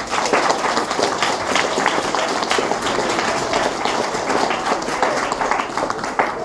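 Audience applauding: many hands clapping, starting suddenly and continuing evenly.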